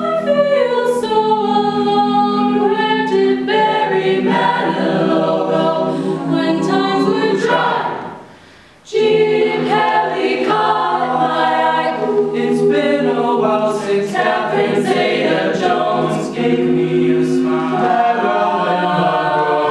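A cappella group of women's voices singing sustained close-harmony chords over a low held bass line, the upper voices sliding down in pitch at the start. About eight seconds in, all the voices cut off together for about a second, then come back in at once.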